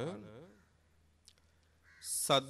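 A man's voice trailing off at the end of a spoken phrase, its pitch arching up and down, then a short pause of near quiet broken by one faint click.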